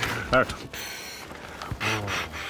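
A short voiced grunt, then breathy blowing into the mouth inflation tube of an aircraft life jacket, ending in a stronger puff of breath.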